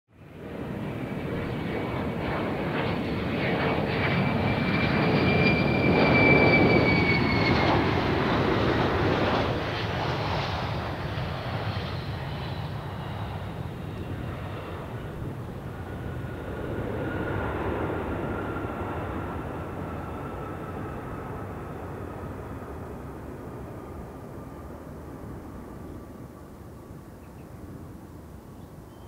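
Jet airliner engines: a roar with a high whine that swells to its loudest about six seconds in, then drops in pitch and fades to a steadier, quieter engine noise, with a second smaller swell just past the middle.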